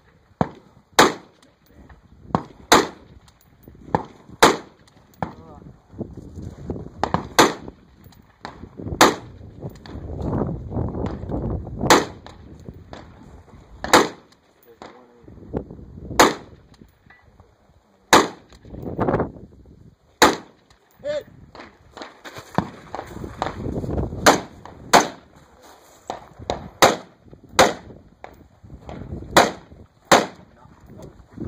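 A long string of gunshots from a competitor firing a course of fire, loud sharp reports coming roughly one every second or two with short pauses between groups.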